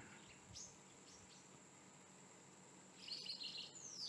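Near silence with faint bird chirps: a few short descending calls about a second in and again near the end, over a faint steady high tone.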